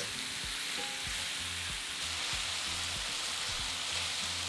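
Lamb chunks sizzling steadily as they fry with onions and spices in an enamelled cast-iron pan, stirred now and then with a slotted spatula: the meat is being sealed.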